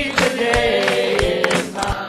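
Church congregation singing a gospel song together, with hand clapping throughout.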